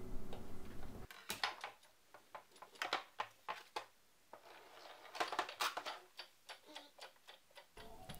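Faint, irregular clicks and light knocks of plastic craft equipment being handled and moved on a tabletop, a few per second.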